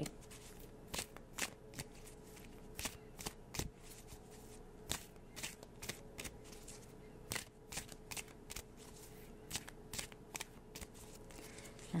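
A deck of oracle cards being shuffled by hand: a long run of soft, irregular card flicks and riffles.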